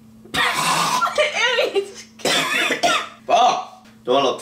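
A person's voice making sounds without words, in three bursts, the first opening with a harsh cough.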